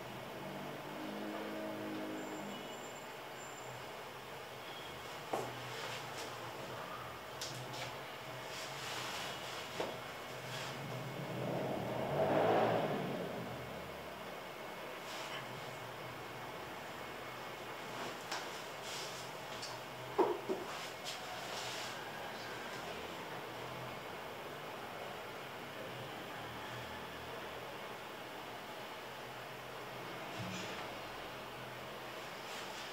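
Quiet room tone with a few small clicks and knocks, and one sound that swells and fades about twelve seconds in.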